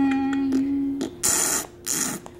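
A voice humming one steady "mm" note for about a second, then two short hissing bursts.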